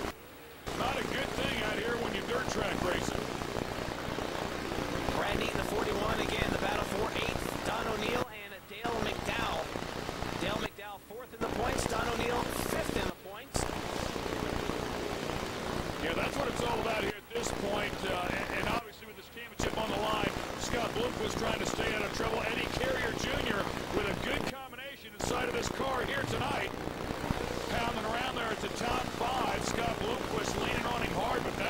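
Dirt late model race cars running laps on a dirt oval, their V8 engines blending into one dense noise. The sound track drops out briefly several times.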